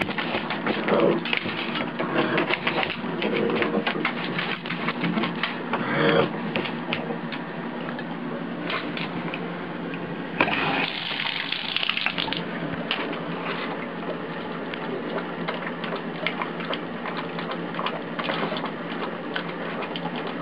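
Tap water running into a bathtub while a pug laps at the stream, a fast, steady clicking patter of lapping over the running water, louder for a couple of seconds near the middle.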